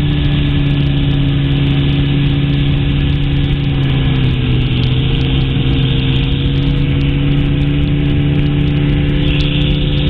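Weight-shift control trike's engine running steadily in cruise flight, a constant drone with rushing wind noise; its pitch sags slightly about four seconds in, then settles back.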